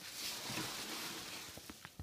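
Polystyrene packing peanuts rustling and shifting as a shoebox is pulled up out of them, with a few faint clicks near the end.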